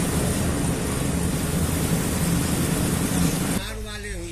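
Loud, steady outdoor background noise with a low hum underneath, cutting off abruptly about three and a half seconds in.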